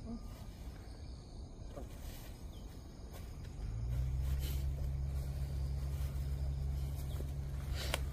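Low, steady engine hum that sets in about halfway through and holds, with a few faint clicks before it.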